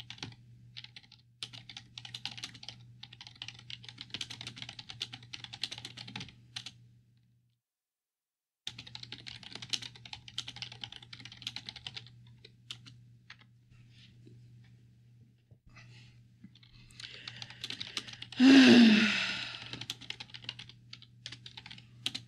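Rapid typing on a computer keyboard in two long runs with a short break between them, then scattered keystrokes. Near the end there is a louder breathy vocal sound, falling slightly in pitch.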